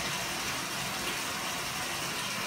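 Steady rushing of water in a filled bathtub, an even hiss with no breaks.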